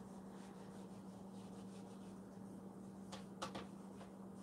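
Faint rubbing of a cotton pad over an eel-skin wallet, wiping off excess conditioning cream, in soft repeated strokes. There are two sharper scuffs a little after three seconds, over a steady low hum.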